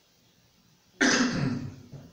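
A man clearing his throat once, close to a microphone, about a second in.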